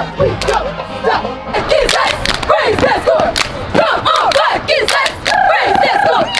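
Female cheerleading squad shouting a chant in unison, with sharp percussive hits among the voices and a drawn-out shouted note near the end.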